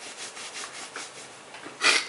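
Handling noise from a handheld camera: a string of soft rubbing strokes against the microphone, with one louder brush just before the end as the camera moves.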